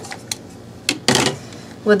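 A couple of light clicks and a short rustle of handling from a hand-held rotary tool that is not running.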